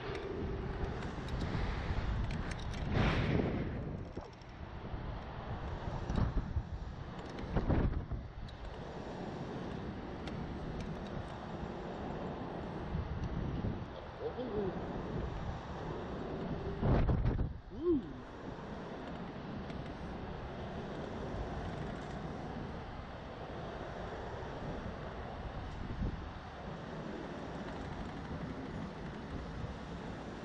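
Wind rushing over an onboard camera microphone as the slingshot ride capsule swings high in the air, coming in uneven gusts with several stronger swells, the loudest a little past halfway.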